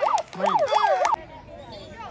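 Yelping siren sound, a fast up-and-down wail about four times a second, that cuts off suddenly a little over a second in, leaving quiet outdoor field sound.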